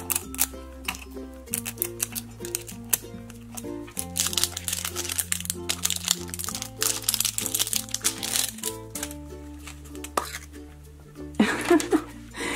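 Background music with slow held bass notes, over the crinkling of a wrapper being peeled off a plastic Fashems blind capsule, busiest about four to six seconds in.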